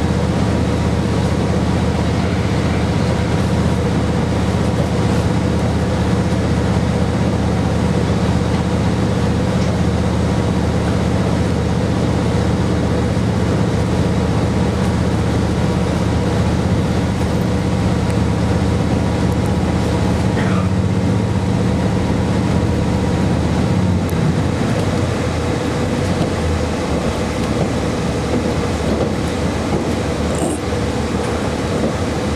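Inside a KiHa 40 series diesel railcar under way: the diesel engine's steady drone under power over constant wheel and rail running noise. About three-quarters of the way through, the engine note falls away as power is shut off and the car carries on coasting.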